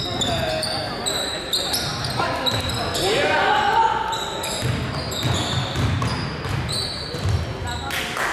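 Basketball bouncing on a hardwood gym floor, with sneakers squeaking in short high chirps and players calling out; a loud shout about three seconds in.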